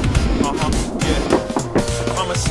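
Skateboard wheels rolling on a mini ramp, with a knock near the end as the board comes up onto the coping, under background music.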